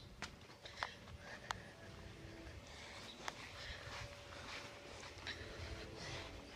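Faint, distant train horn: a few steady tones held low under the outdoor background, with a few sharp clicks in the first few seconds.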